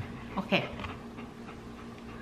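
A single short spoken 'okay' about half a second in, then quiet room tone with a faint steady hum.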